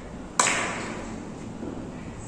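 A carom billiards shot: a single sharp click about half a second in, as the cue strikes the cue ball and sends it into the red, followed by a softer fading tail as the balls roll across the cloth.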